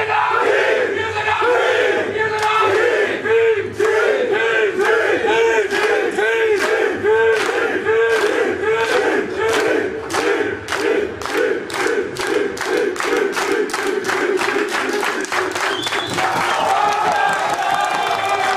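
A team of men chanting in unison, one short shout repeated about twice a second, with rhythmic clapping that speeds up as it goes. Near the end it breaks into loose cheering and yelling.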